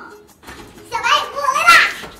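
Speech: a high, child-like female voice calling out loudly, starting about a second in.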